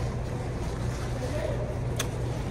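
Restaurant dining-room ambience: a steady low hum with faint voices in the background.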